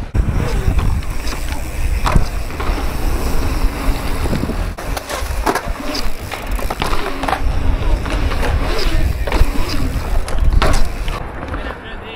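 Wind rumbling on a riding mountain biker's action-camera microphone, with repeated knocks and rattles from the bike over the ground.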